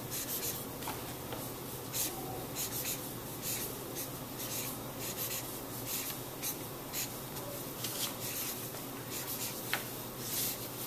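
Felt-tip marker drawn across a large sheet of paper in lettering strokes: a steady run of short rubbing strokes, a few a second, with brief pauses between letters.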